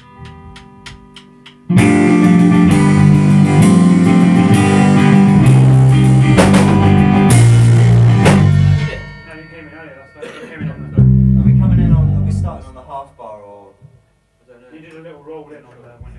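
A rock band rehearsing: after a few quieter picked electric-guitar notes, the electric guitar, bass and drums come in loudly about two seconds in and play a riff for about seven seconds before stopping. A shorter loud burst of the band follows, with talk in between.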